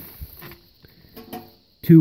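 A man's voice trailing off at the start, then a pause in his talk with only a faint short murmur and a few soft ticks before he speaks again.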